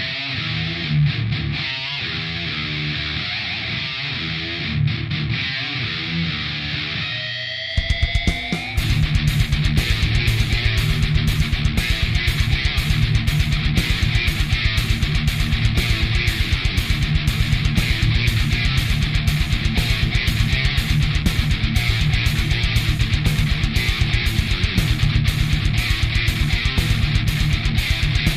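Heavy-metal intro on a high-gain distorted electric guitar, an Epiphone Les Paul Standard with DiMarzio PAF pickups played through the EMMA PisdiYAUwot distortion pedal. Single picked notes end in a rising slide, then about eight seconds in a fast, steady heavy-metal rhythm of riffing and hits comes in.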